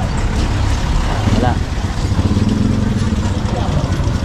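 Street traffic with a motorcycle engine running close by, over a constant low rumble.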